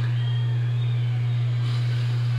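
A steady, loud low hum, with faint muffled sound from a television playing loudly in another room behind it.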